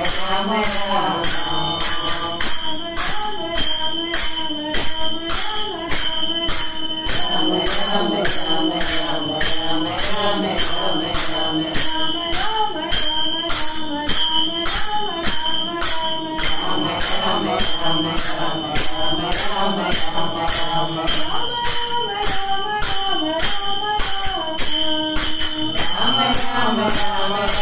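A small group singing a devotional bhajan together, kept in time by a steady beat of hand claps with a metallic jingling.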